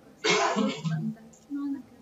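A person clearing their throat: one short rasping burst about a quarter second in, followed by a couple of brief low vocal sounds.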